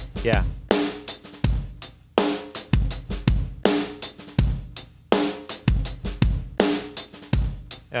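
Heavily compressed drum kit (kick, snare and overheads) playing a steady beat through a parallel crush bus, with a hit about every three-quarters of a second. Each hit dies away quickly and leaves a short ringing tone.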